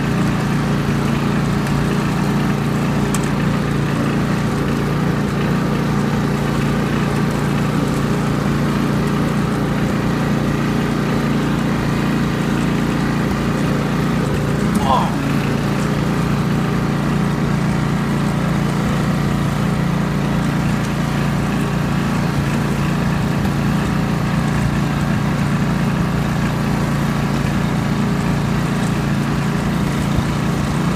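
Ride-on lawn mower engine running steadily as the mower drives across grass, with one brief sliding sound about halfway through.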